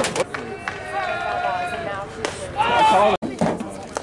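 A single sharp crack right at the start as a batter swings at a pitch at the plate. Spectators talk and call out after it, loudest a little before the sound breaks off briefly about three seconds in.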